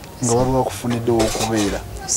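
Speech: a woman talking in a steady run of words.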